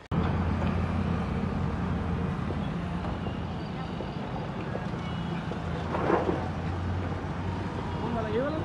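Road traffic with a steady low engine hum from a nearby vehicle, and a brief louder burst about six seconds in.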